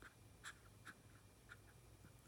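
Faint, soft wet clicks, four or five in two seconds, from a grey squirrel licking her paws and face while grooming.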